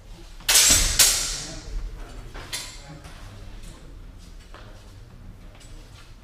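Steel longsword blades clashing twice in quick succession, about half a second apart, each strike ringing out and fading, followed by a lighter clash a couple of seconds in.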